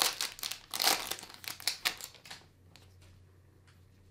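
A 2022 Panini Prizm Football card pack's foil wrapper crinkling as it is torn open and handled, stopping a little over two seconds in, followed by a few faint ticks.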